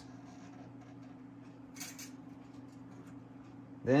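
Faint handling of a guitar string at the headstock: a short scraping rustle about two seconds in, over a steady low hum.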